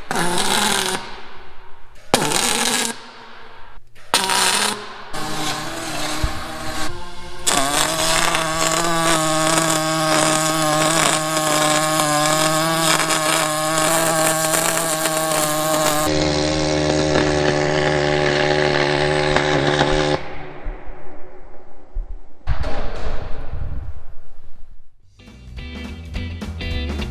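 Welding arc of a 350 welder buzzing like an angry swarm of bees as a bead is laid on steel: several short bursts as the arc strikes and stops, then a steady buzz of about twelve seconds, and another short burst near the end.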